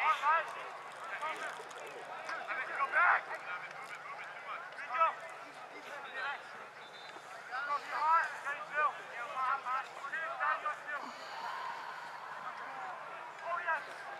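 Short shouts and calls from players on a lacrosse field, coming in clusters over a steady low hum.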